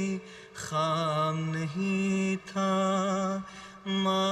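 Solo male voice chanting an Urdu nazm (devotional poem) in a slow unaccompanied melody, holding long notes with a slight waver and breaking off briefly for breath between phrases.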